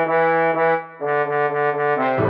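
MIDI playback of a men's four-part choral arrangement, a practice track for the baritone part: synthesized instrument voices holding sustained chord notes, with a brief break just before a second in and a new chord after it.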